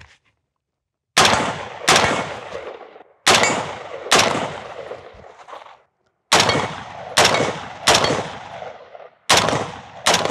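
AR-15 rifle fired in quick pairs: eight shots in four pairs, each pair about a second apart, and each shot followed by a short echo that dies away.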